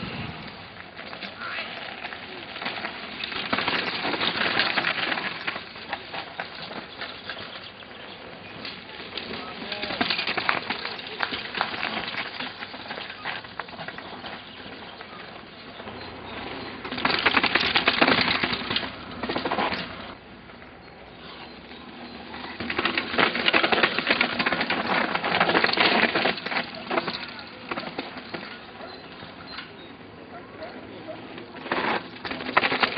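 Downhill mountain bikes coming down a dry, loose dirt trail: tyres crunching and skidding over gravel, with rattling and clicking. The sound swells in four louder passes.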